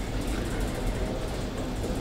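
Steady room noise of a hall: a low hum under an even hiss, with no distinct events.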